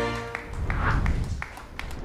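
Music stops within the first half second, followed by a few scattered hand claps from a small audience.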